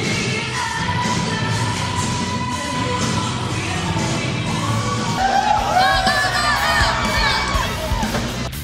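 Loud rock music with singing. About five seconds in, a crowd of fans starts cheering and screaming over it.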